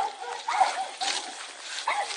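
A dog barking a few short times: at the start, around half a second in, and near the end.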